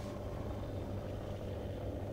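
Steady low background hum with a faint steady tone above it, and no distinct knocks or taps.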